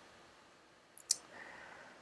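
Two quick computer mouse clicks about a second in, the second louder, over quiet room tone.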